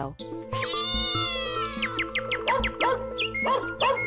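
Short intro music sting: held chords with animal-like calls over them, one long arching call about half a second in, then several short rising-and-falling calls near the end.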